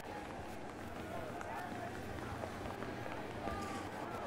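Faint football stadium ambience: distant, indistinct voices over a steady low background noise.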